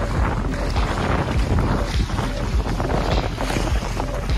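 Wind buffeting the microphone over the rush of water along the hulls of a Prindle 19 catamaran under sail, a steady unbroken noise.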